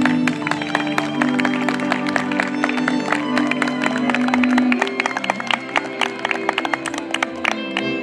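Audience applause, dense claps from just after the start until near the end, over a folk cimbalom band whose fiddles and double bass keep playing held notes.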